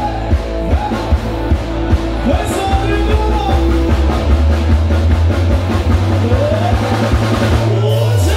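Live rock band playing loudly through a PA: a male singer over drum kit, electric guitars, electric bass and keyboard, with a heavy bass line and a steady drum beat.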